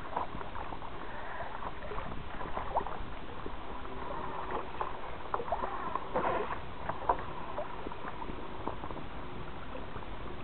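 Water splashing and slapping against a fishing kayak's hull as a hooked fish tows it along, with many small splashes and a slightly busier patch of splashing about six seconds in.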